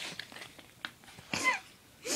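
A brief cough-like vocal sound from a person with a mouth full of marshmallows, about one and a half seconds in, amid otherwise quiet scattered noises.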